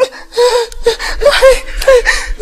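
A woman sobbing: short, gasping cries in quick succession.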